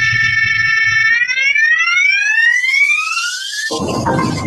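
Electronic riser effect in a show's intro jingle: a synthesized tone held steady for about a second, then sliding steadily upward in pitch, cut off near the end as electronic music starts.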